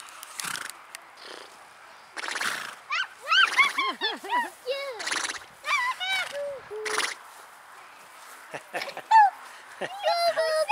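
Indistinct voices in short rising-and-falling calls, with a few brief breathy noise bursts between them.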